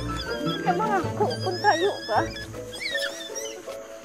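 Background music, with a run of high, squeaky calls that slide up and down in pitch through the middle.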